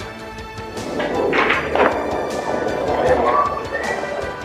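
Background music with sustained tones and regular percussive strokes, with a person's voice briefly about one to two seconds in.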